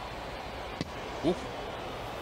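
A single sharp pop about a second in: a pitched baseball smacking into the catcher's mitt, over the faint steady hum of a broadcast from an empty ballpark.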